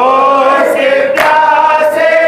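Men's voices chanting a noha in unison, held notes that bend in pitch, led by a reciter on a microphone. A sharp slap about a second in is part of a regular beat, one slap about every second and a half, which fits mourners striking their chests in matam.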